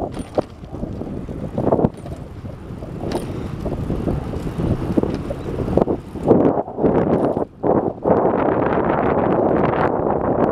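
Wind buffeting the microphone of a camera on a moving bicycle, over the rumble of the tyres on a concrete path. The buffeting swells in uneven gusts and is loudest in the second half.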